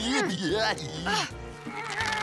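A cartoon troll laughing for about the first second, over background music that carries on after the laugh stops.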